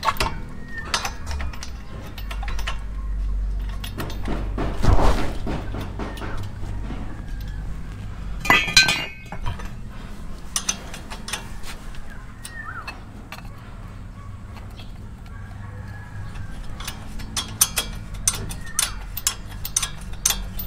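Scattered metallic clinks and knocks from a brake caliper and its bolts being handled and fitted on a Toyota Innova's front disc brake, with a quick run of small clicks near the end as a wrench goes onto a bolt.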